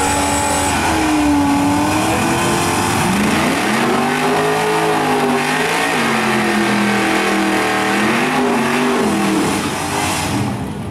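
Drag-racing Ford Mustang doing a burnout: the engine is revved hard with the rear tyres spinning. The revs climb about three seconds in and stay high, swelling and dipping.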